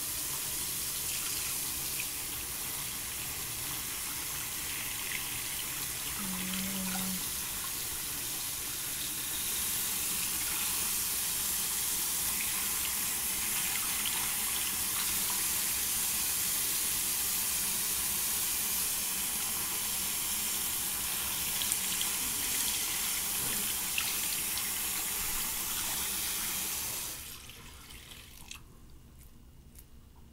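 Bathroom sink tap running in a steady rush of water while hands are washed under it, turned off about 27 seconds in.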